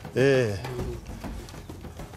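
A man's voice: one short, drawn-out vocal sound, a fraction of a second in, whose pitch falls at the end. Only faint low background sound follows.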